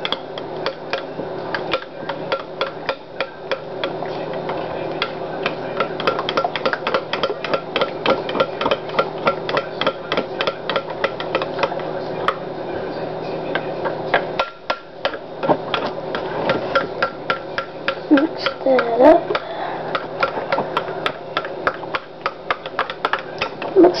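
A spoon clinking and scraping rapidly against a glass bowl as a thick mixture is stirred, several strikes a second, the bowl ringing faintly after each. The stirring stops briefly a little past halfway through, then carries on.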